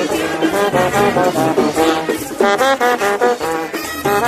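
Live brass band playing a lively melody on horns, with quick runs of notes in the second half.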